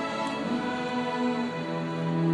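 Student string orchestra of bowed violins and lower strings playing, a line of held notes that shift in pitch.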